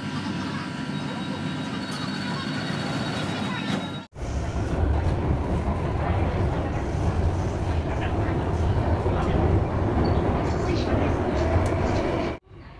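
Inside a Singapore MRT North East Line train car: first a steady electrical hum with a fast, high beeping for about a second and a half as the doors are about to close. Then, after an abrupt cut, the louder low rumble of the train running.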